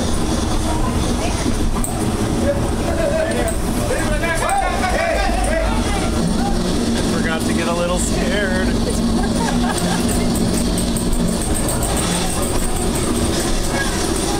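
Dark-ride car running along its track with a steady low rumble and drone. Indistinct voice-like sounds come over it twice, around four seconds in and again around seven to eight seconds.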